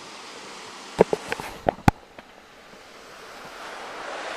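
Steady wind and outdoor hiss on a body-worn camera's microphone, with a quick run of five or six sharp clicks and knocks about a second in, from the worn camera or gear being jostled. The hiss slowly swells near the end.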